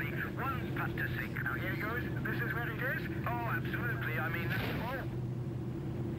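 Steady low drone of an airliner cabin in flight, under voices.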